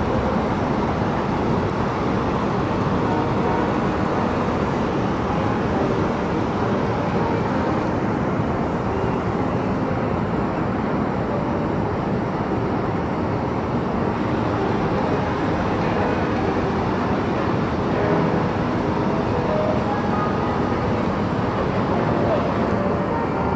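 Steady city traffic noise heard from above, a constant even rumble and hiss, with faint music beneath it.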